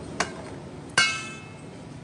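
Kitchenware clinking: a light knock, then about a second in a louder, sharp metallic clink that rings briefly.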